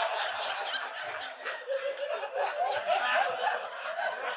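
Audience laughter in a large hall: scattered chuckles from many people, easing a little after the first second.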